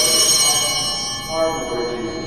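Altar bells rung at the epiclesis of the Eucharistic Prayer, as the priest calls the Spirit down on the bread and wine: a bright ring that starts suddenly and fades slowly over about two seconds.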